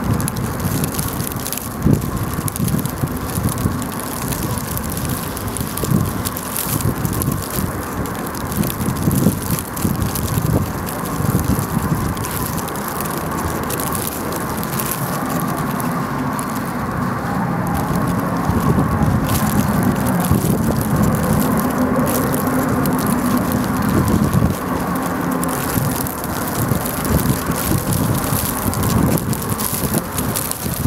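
Wind in a snowstorm buffeting the microphone: a steady noisy rush with a gusty low rumble, a little stronger in the second half.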